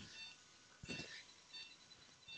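Faint short electronic beeps from procedure-room equipment, about one every two-thirds of a second, with a brief soft noise just under a second in.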